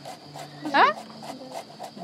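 A single short questioning "ah?" from a person's voice, sweeping up in pitch about a second in, amid low background between stretches of conversation.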